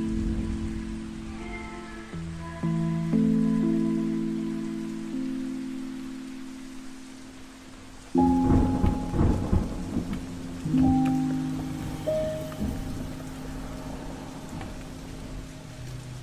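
Steady rain under slow lofi keyboard chords, with a thunderclap about halfway through that crackles and rumbles for two or three seconds.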